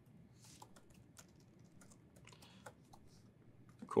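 Faint, irregular keystrokes on a laptop keyboard, a few taps at a time.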